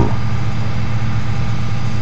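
Fire appliance pump engine running with a steady low drone while it feeds foam solution to the branch pipe.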